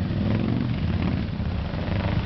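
Motorcycle engine idling close by with a steady low rumble.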